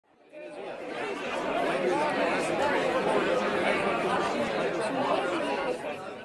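Indistinct chatter of many people talking at once, with no single voice standing out, fading in about half a second in.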